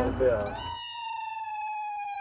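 A brief laugh and voice, then an ambulance siren: one long wailing tone that falls slowly in pitch.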